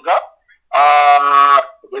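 A man's voice: a brief bit of speech, then one steady held vowel about a second long.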